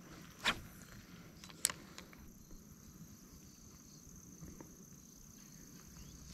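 Quiet outdoor stillness broken by two short sharp clicks, about half a second and a second and a half in, from a spinning rod and reel being handled, with a faint steady high-pitched tone throughout.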